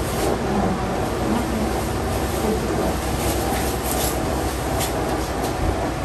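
Steady rushing background noise with a low rumble, with a few faint clicks about three to five seconds in.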